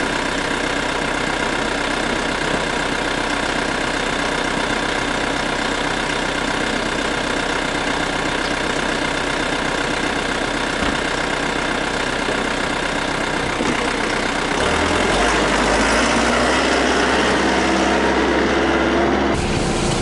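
Yanmar YT359 tractor's diesel engine idling steadily. About fifteen seconds in, the sound deepens and grows a little louder.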